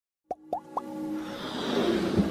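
Animated logo-intro sound effects: three quick rising pops about a quarter second apart, then a swelling whoosh with sustained musical tones that builds toward the end.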